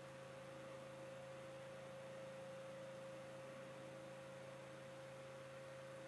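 Near silence with a faint, steady electrical hum and a thin steady tone above it.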